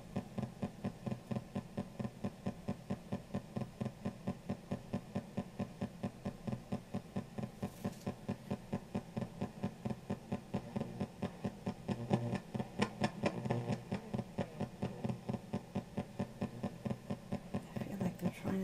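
PSB7 ghost box sweeping rapidly through AM radio stations, amplified through a karaoke machine's speaker: a choppy, even pulsing of static and hum, about four bursts a second, with a louder stretch of radio fragments about two-thirds of the way through.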